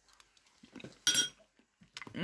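A metal spoon clinks once against a china dish about a second in, a short ringing strike, with faint small handling sounds just before it.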